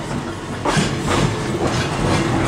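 Huntington Standard streetcar running along the track, heard from the front platform: steel wheels rolling and clacking over rail joints, with the wooden car body rumbling and rattling. A sharper clack comes about a third of the way in.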